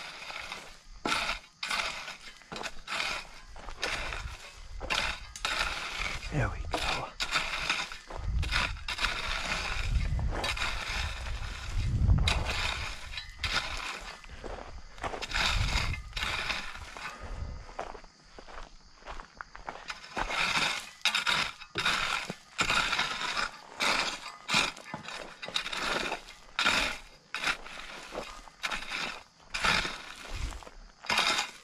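Steel garden rake scraping and dragging through gravel and dirt in repeated strokes, about one or two a second.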